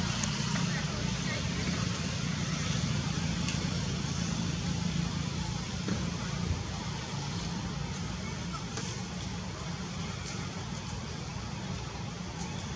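Steady outdoor background noise: a low, even rumble like distant road traffic, with faint voices mixed in.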